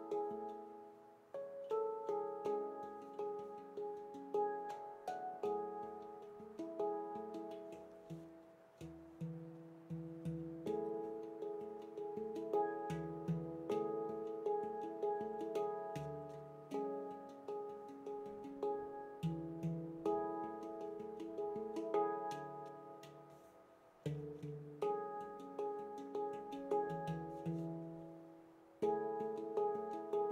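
Veritas Sound Sculpture stainless-steel handpan, an 18-note instrument tuned to the F#3 pygmy scale, played by hand: a flowing run of finger-struck notes that ring out and overlap, fading briefly a few times before new strikes.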